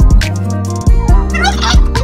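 A domestic tom turkey, puffed up in strut display, gobbles once, a quick rattling call a little over a second in. Background music with a steady bass runs underneath.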